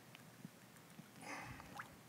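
Faint keystrokes on a laptop keyboard as a terminal command is edited, with a brief soft noise about a second in, over quiet room tone.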